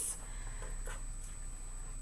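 Faint rustle of construction paper being handled and laid into place on a tabletop.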